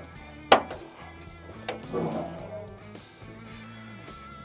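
A sharp metal clunk about half a second in as the hood latch of a 1975 Ford F-250 is released, then a softer knock and some rattle as the steel hood is lifted open, over background music.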